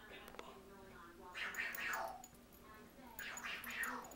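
Small dogs playing tug-of-war over a plush toy, with two short high whining cries, each falling in pitch, about a second in and near the end.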